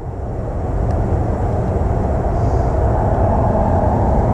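Wind buffeting the microphone: a low, steady rumble that swells over the first second and then holds.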